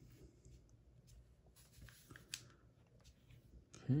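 Faint, light ticks and rustles of trading cards being handled and laid down on a pile, with stretches of quiet between them.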